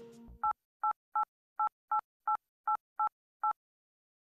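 Touch-tone telephone keypad beeps: nine quick presses of the same two-note dialing tone as a number is dialed.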